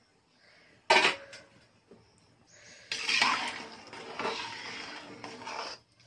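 A sharp metallic knock about a second in, then a metal ladle stirring rice and water in a large metal cooking pot for the last three seconds, scraping against the pot and sloshing the liquid.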